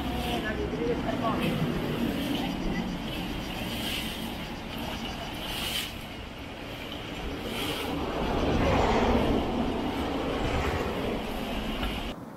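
Outdoor ambience of road traffic, with one vehicle growing louder and passing about nine seconds in, and people's voices in the background.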